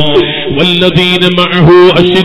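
A man's voice chanting in long, held melodic notes, in the drawn-out style of Quranic recitation.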